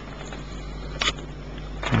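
Steady low electrical hum from the running home-built pulser battery charger, with a single sharp click about a second in.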